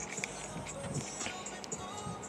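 Music playing quietly through the car's stereo system.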